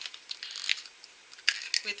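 Thin plastic shell of a Hatchimals mini toy egg cracked and pried apart by fingers: a run of small, sharp crackles and clicks, with one more crack about a second and a half in.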